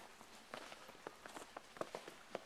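Footsteps of people walking on a thin layer of fresh snow: faint, irregular steps, several a second.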